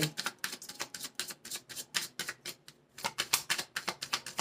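A deck of tarot cards being shuffled by hand: a rapid run of soft card clicks and slaps, pausing briefly about three seconds in.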